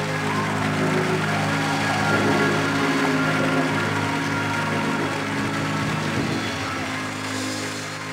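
Live gospel music at the close of a song: the band and keyboards hold a long chord, easing down a little near the end.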